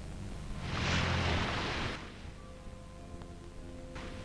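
A person diving into the sea: one loud splash, starting just over half a second in and lasting about a second. Soft background music follows.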